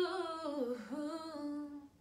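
A woman singing unaccompanied, holding out a long note whose pitch wavers and dips lower before rising again, stopping just before the end.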